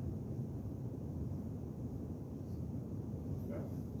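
Steady low background rumble of room noise, with no distinct sounds in it.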